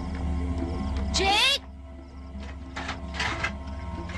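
Film soundtrack with a low droning music bed. About a second in, a short loud cry rises in pitch. The music then drops away, and a few short scraping noises follow.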